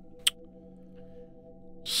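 Quiet ambient background music: a steady drone of several held tones, with one sharp click about a quarter of a second in.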